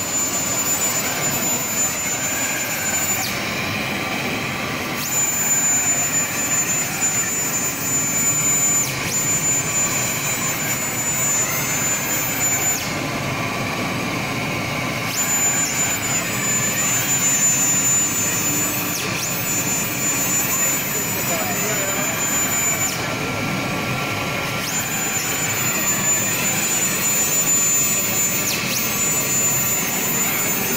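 Large laser cutting machine running: a steady rushing noise with a high whine that cuts out and comes back three times, and faint motor tones that rise and fall.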